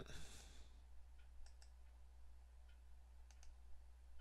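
Faint computer mouse clicks, a few in all, some in quick pairs, over a low steady hum.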